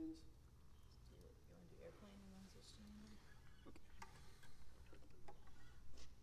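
Quiet lull with faint, indistinct voices: a couple of short murmured sounds and a few small clicks.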